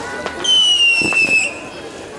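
A whistling firework gives one shrill whistle about a second long, falling slightly in pitch, among sharp firecracker bangs.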